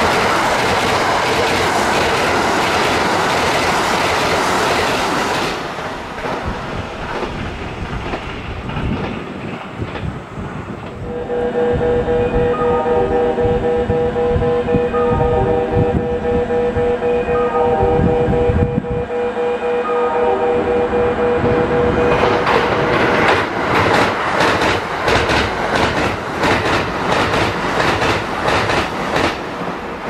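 Kintetsu limited express trains passing through a station at speed, their wheels clattering rhythmically over the rail joints. In the middle, a long multi-note tone sounds for about ten seconds while the next train approaches with slower knocks. That train then passes close by with loud joint clatter.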